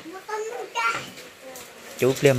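Brief, fairly quiet background voices, a child's voice among them.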